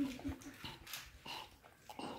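A dog whimpering faintly in a few short cries.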